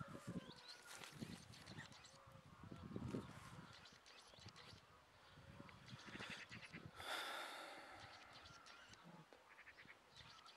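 Quiet outdoor ambience: faint rustling of peach-tree leaves and footsteps on soil as someone walks between the trees, with faint distant animal calls. A short, slightly louder rustle about seven seconds in.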